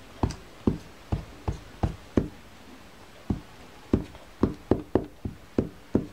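Glue stick knocking and rubbing against a paper cut-out on a table as glue is applied: a run of dull knocks, about two a second, with a short pause about halfway.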